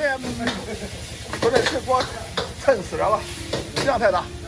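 Rice noodles sizzling in a wok as they are stir-fried, with a metal spatula scraping and knocking against the wok now and then.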